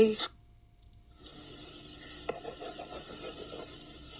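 Faint scratching and tapping of a crayon on paper over quiet room hiss, with one sharp click about two seconds in.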